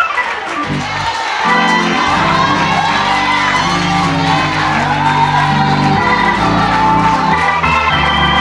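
Live church praise music with sustained keyboard and bass notes, under a congregation cheering and shouting.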